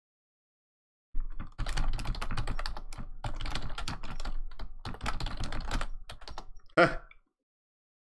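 Rapid typing on a computer keyboard, a dense run of keystrokes lasting about five seconds after a second of dead silence. A man says 'huh' near the end.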